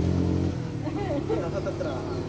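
A motor vehicle engine's low, steady hum that cuts off sharply about half a second in, with quiet voices over it.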